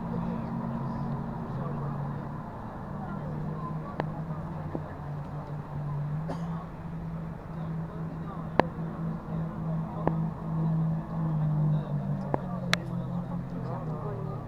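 Racing powerboat engine running flat out across the lake, heard from a distance as a steady low drone that wavers slightly in pitch, with a few sharp clicks over it.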